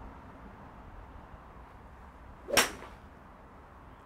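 A hybrid golf club striking a golf ball off an artificial hitting mat: one sharp crack about two and a half seconds in, fading out quickly. The ball is struck slightly off the toe of the club.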